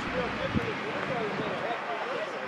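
Several people talking at once in indistinct, overlapping chatter, with a brief low thump about half a second in.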